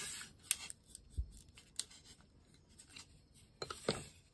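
Steel awl scratching and ticking as its point is pressed into a wooden board to mark hole positions, with a dull knock about a second in. Near the end there is a burst of scraping as the board is slid and lifted off the cutting mat.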